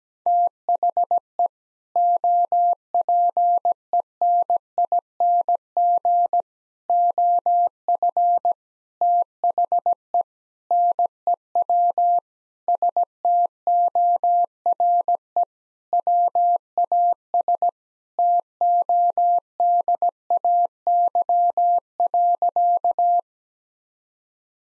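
Morse code at 17 words per minute, sent as a single steady beep tone keyed on and off in short dits and longer dahs, with short gaps between letters and longer gaps between words. It spells out the sentence 'The opening of the new store was today,' and stops about a second before the end.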